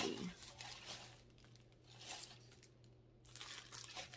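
Faint rustling of unboxing packaging that fades out about a second in, leaving near quiet with a low steady hum.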